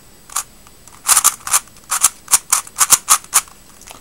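Plastic 3x3 puzzle cube turned by hand, its layers clicking as they turn: one click, then a quick run of about a dozen clicks about a second in that lasts a couple of seconds.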